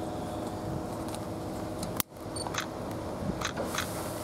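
Steady hum of a Class 313 electric multiple unit standing at the platform. A sharp click comes about halfway through, with a moment of near dropout just after it.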